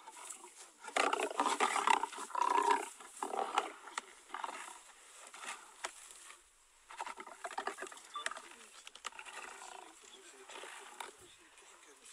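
White lions growling and snarling while feeding together on a carcass. The loudest growling comes about a second in and lasts some two seconds, followed by quieter, broken growls later on.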